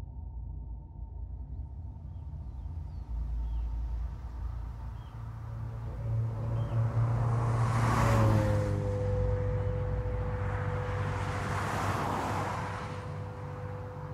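Film soundtrack with no speech: a low sustained drone, joined about eight seconds in by a steady held note, with two swelling rushes of noise that peak about eight and twelve seconds in and fade away.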